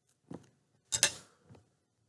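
Steel scissors snipping thread: three sharp clicks of the blades, the loudest about a second in.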